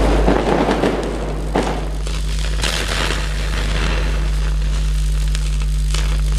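Electric crackling and zapping sound effect over a steady low hum, with bursts of crackle about a second and a half in and again near the three-second mark.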